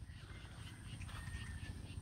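Faint open-field ambience: a low rumble with faint chirps repeating about three times a second and a brief thin whistle near the middle.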